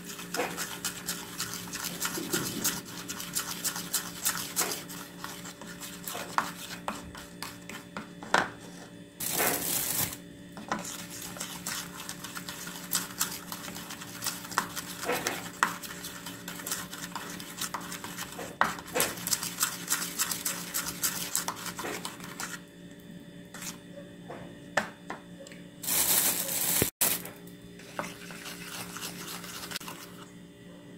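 Metal teaspoon stirring and scraping in a small bowl of powdered-sugar glaze, with frequent light clicks of the spoon against the bowl as the sugar is mixed in. Two short bursts of rustling hiss come about 9 s and 26 s in.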